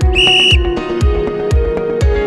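Background electronic music with a steady beat of about two thumps a second. A single short whistle blast, about half a second long, sounds just after the start.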